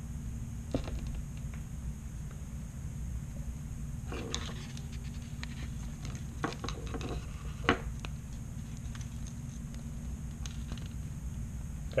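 A few scattered small clicks and rustles of hands handling small plastic drone parts as micro motors are pressed into a Blade Inductrix's plastic ducted frame, over a steady low hum.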